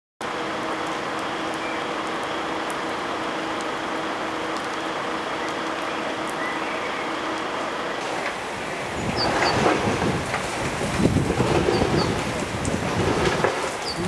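Steady outdoor hiss with a faint low hum, growing louder and more uneven from about nine seconds in, with a few short high chirps.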